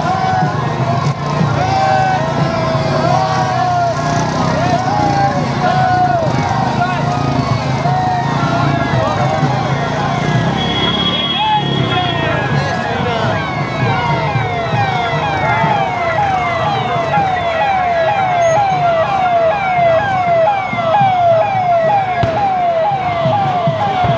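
Police vehicle siren wailing with slow rises and falls, switching about halfway through to a fast yelp of about two sweeps a second, over crowd noise.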